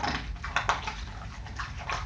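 A dachshund chewing an ice cube, irregular crunches and clicks of ice breaking between its teeth.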